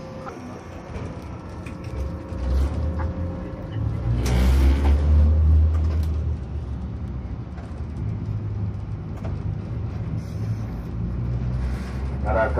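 Toei 7000-series tram heard from inside the car as it runs along the track, a steady low rumble of motor and wheels on rail. There is a louder burst of noise about four seconds in.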